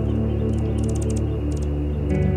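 Background ambient music of sustained, steady low tones, with a few brief high ticks between about half a second and a second and a half in.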